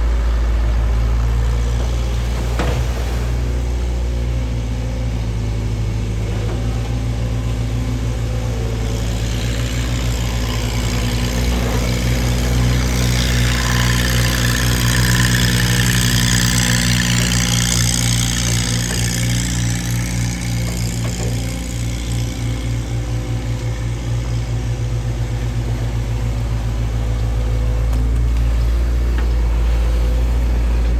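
Diesel engine of a Sumitomo SH long-reach excavator running steadily as it works. Through the middle of the stretch water rushes and churns around the arm down in the river.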